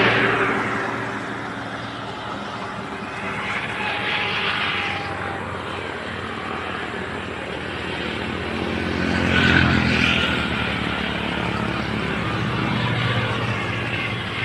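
Road noise from a moving vehicle: a steady engine hum with tyre and wind rush that swells several times, loudest about nine and a half seconds in.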